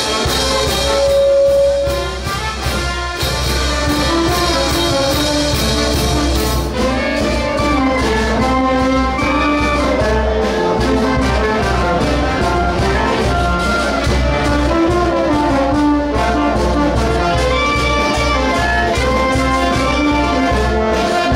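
Brass band music, trumpets carrying the melody over a steady beat; the music changes about seven seconds in.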